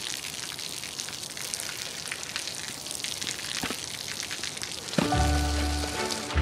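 Rain falling and splashing on wet pavement, a steady hiss full of fine patters. About five seconds in, music begins with a low bass and sustained notes.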